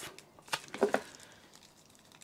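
Soft handling noises: a few faint clicks and rustles in the first second as a microfibre cleaning cloth is lifted out of a cardboard accessory box, then near quiet.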